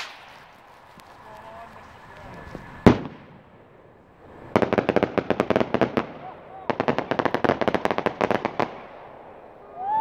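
Homemade skyrocket: the hiss of its climb fades, then one sharp bang just before three seconds in as it bursts. Two runs of rapid crackling follow, each lasting a second and a half to two seconds.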